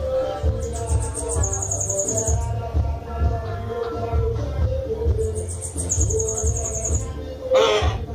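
Caged bananaquit (sebite) singing twice: each song is a rapid, very high-pitched trill of about two seconds, over background music. A short, loud burst of noise comes near the end.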